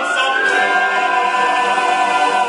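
Choral music: voices singing long held notes together.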